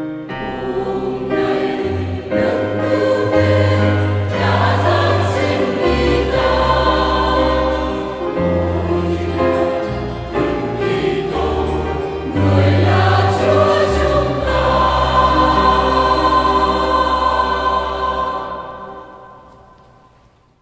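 Mixed choir singing a Vietnamese Christmas hymn with piano accompaniment and sustained deep bass notes, ending on a long held chord that fades out in the last couple of seconds.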